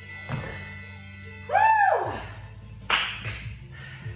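Dumbbells set down on a rubber gym floor: a dull thud, then a short vocal exclamation that rises and falls in pitch, then two sharp clanks as the dumbbells knock against each other. Background music plays under it all.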